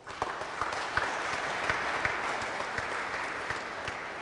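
Audience applause, starting suddenly and slowly dying away near the end.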